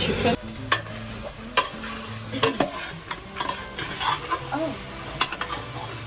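Metal ladle stirring chunks of pork in a metal cooking pot, with scattered clinks and scrapes of metal on metal.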